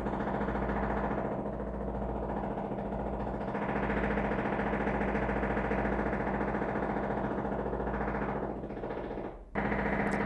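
An edited-in suspense sound effect: a steady low droning rumble with a rapid flutter, which fades out near the end.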